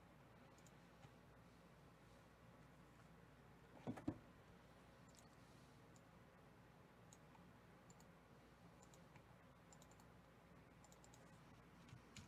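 Near silence with faint computer mouse clicks scattered throughout, and a brief double thump about four seconds in.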